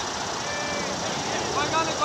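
Distant shouted calls from cricket players on the field, coming in short bursts in the second half, over a steady background hiss.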